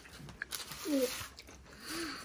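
A child biting into and chewing a crisp thin-crust pizza slice, soft crunching, with one short murmur from a child about a second in.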